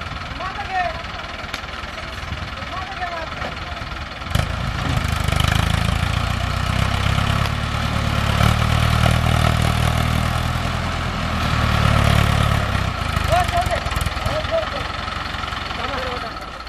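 Mahindra Arjun 605 DI tractor's diesel engine running at low revs, then about four seconds in opening up and labouring under heavy load as it drags a loaded sugarcane trolley, holding hard for about eight seconds before easing back near the end.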